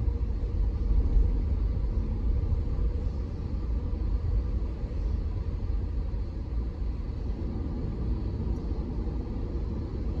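Steady low rumble of a car driving, heard from inside the cabin, with a slight swell about a second in.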